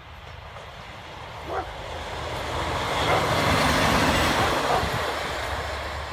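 MÁV Bzmot diesel railcar passing close by: its diesel engine drone and wheel-on-rail noise grow louder, peak about three and a half to four seconds in as it goes past, then fade as it moves away.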